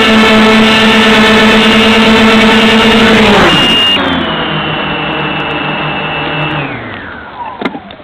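Multicopter's electric motors and propellers whining steadily, then dropping in pitch and spinning down about three seconds in as it sets down. A higher whine then holds and winds down near the end, followed by a few clicks.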